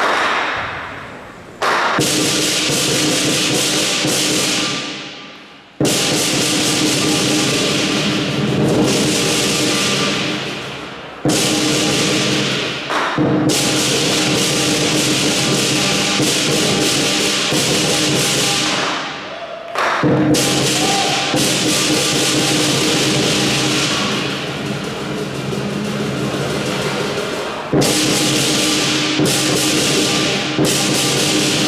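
Southern lion dance percussion: a big lion drum with gong and cymbals playing loud, dense ringing phrases that break off and start again with sudden crashes several times.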